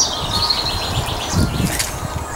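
A small bird chirping outdoors: a quick high trill that slides downward in pitch at the start, over a low rumbling background.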